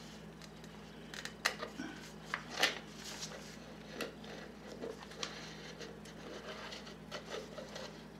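An upturned plastic bowl and a magazine being slid and scraped over the floor by hand, in short irregular scrapes and light clicks, with a steady low hum underneath.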